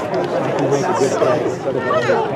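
Several spectators talking at once, their voices overlapping in steady chatter.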